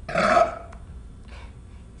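A woman burps once, loudly, near the start, a pitched belch about half a second long, followed by a fainter short sound about a second later.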